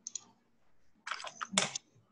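A few sharp clicks and taps from a computer keyboard and mouse: one at the start, then a quick cluster about a second in, the loudest near the end.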